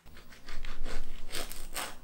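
Serrated bread knife sawing through the crust of a freshly baked small round-top loaf: a quick run of rasping back-and-forth strokes, louder toward the end.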